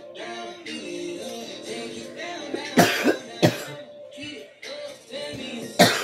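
Music plays steadily while a person coughs hard twice about three seconds in and once more near the end; the coughs are the loudest sounds.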